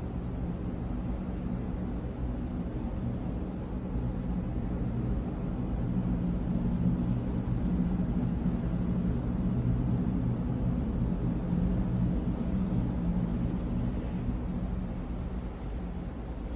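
Low, steady rumble and hum of cruise ship machinery as a large ship manoeuvres close alongside, swelling a little in the middle and easing near the end.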